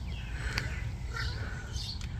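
Outdoor background of small birds chirping now and then over a low steady rumble, with a single click about half a second in.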